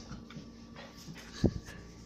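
Pet dog close to the microphone giving faint whimpers, with one short thump about halfway through.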